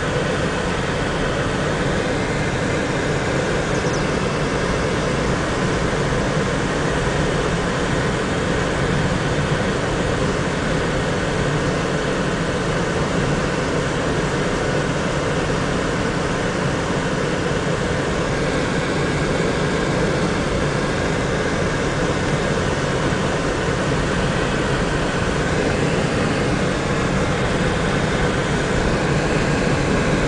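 A car's engine and tyres on paved road heard from inside the cabin while driving at a steady speed: a steady, even rumble that does not change.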